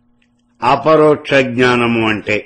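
A man reciting a Sanskrit verse in a chanting voice, with long held notes, starting about half a second in.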